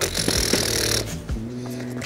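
Background music with steady low notes, under a brief hissing rustle during the first second.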